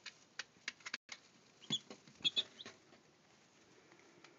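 One-week-old Brahma chicks: scattered short clicks and rustles from their feet and beaks in grass-clipping bedding, with a few short high peeps about halfway through that are the loudest sounds.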